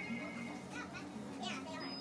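Electronic skill-game machine playing its bonus-round music and sound effects as the bonus-plays counter spins, with indistinct voices in the background.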